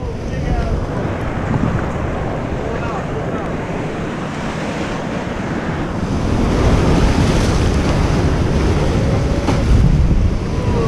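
Ocean surf washing over coastal rocks, with wind buffeting the microphone; the wash grows louder about six seconds in.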